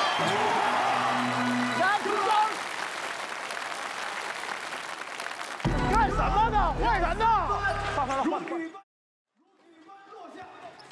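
Excited shouting and crowd noise over background music. About halfway through, a bass-heavy music cue comes in under a man's shouting. The sound then cuts out for about half a second near the end.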